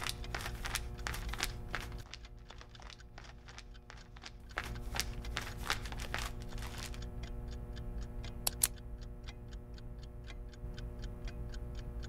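A newspaper being handled and waved, its pages rustling and crackling in irregular clicks, then a steady ticking about four times a second over a low steady hum.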